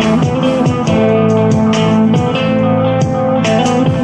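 Electric guitar playing a slow improvised lead in A minor over a backing track with drums, the guitar holding long sustained notes.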